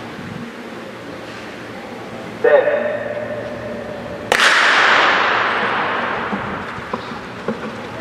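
A starter's call over the stadium loudspeakers, then a starting gun fired about two seconds later, a single sharp crack whose echo rings out across the stadium and fades slowly as a wheelchair race starts.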